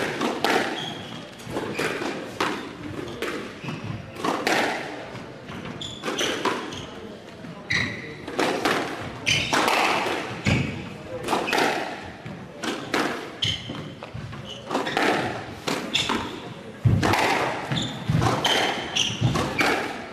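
Squash rally: a string of sharp thuds, about one every half second to a second, as the ball is struck by rackets and hits the court walls. Short high squeaks from court shoes on the wooden floor come in between the thuds.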